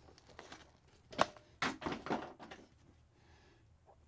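Small objects knocked over and clattering into a box: a sharp knock about a second in, then a brief rattle.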